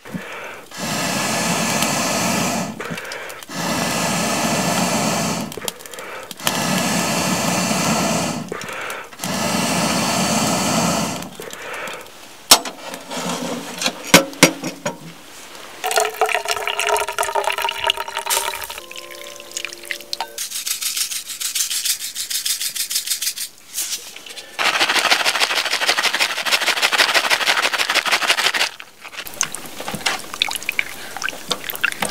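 Water pouring and splashing into a metal cooking pot on a stove, in four spells of about two seconds each. Then come a few sharp clinks of metal, and near the end a longer spell of hissing, bubbling liquid as the pot steams.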